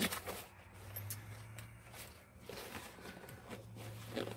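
Faint rustling and a few soft knocks of a fabric zip-up cosmetic bag being handled, over a low steady hum.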